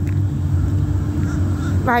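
A steady low rumble under one constant hum, like a motor running without change.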